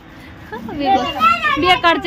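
A toddler's voice babbling and calling out, starting about half a second in.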